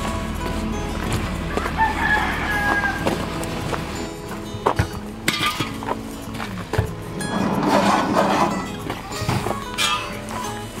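A rooster crowing about two seconds in, with footsteps on gravel.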